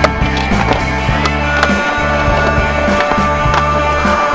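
Music with a steady bass line, over skateboard sounds: urethane wheels rolling on concrete and the sharp clacks of the board and trucks hitting the ramp, the loudest clack right at the start.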